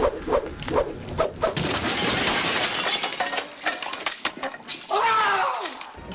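Nunchucks being swung, with a quick run of sharp clacks and knocks over the first second and a half. Near the end comes a short vocal sound that falls in pitch.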